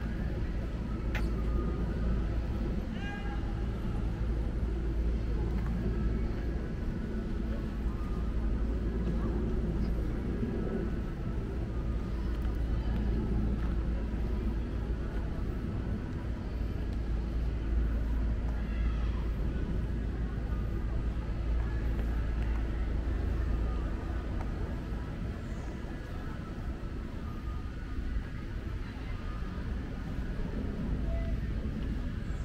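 Outdoor city ambience: a steady low rumble, with faint distant voices now and then.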